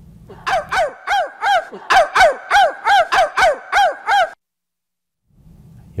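A run of about a dozen quick, pitched, bird-like calls, each rising and falling, about three a second, that cuts off abruptly into dead silence.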